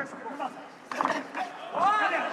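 Cornermen shouting fight instructions in Dutch ("rechts"). There is a sharp smack about a second in, and a long drawn-out shout rises near the end.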